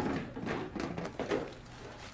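Soft handling noises at a kitchen counter: light clicks, knocks and rustles of cups and a drink-mix packet being handled, busiest in the first second and a half.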